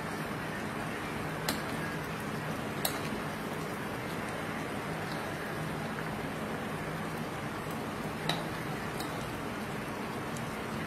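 Chow chow broth, thickened with cornflour, simmering in a wok: a steady bubbling hiss with a few sharp pops, about a second and a half in, near three seconds, and past eight seconds.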